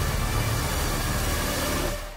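Cinematic trailer sound design: a loud, dense rush of noise over deep, held bass tones that drops away near the end.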